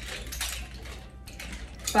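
Chain-linked nunchucks being spun in wrist rolls, the chain clicking and rattling in short irregular bursts.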